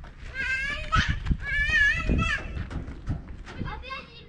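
A young child's high, wavering voice: two drawn-out warbling 'aaa' calls, the second just after the middle, then shorter high calls near the end. Dull low thumps run underneath.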